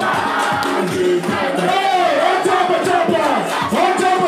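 Live concert: loud music with a crowd of voices shouting and singing along.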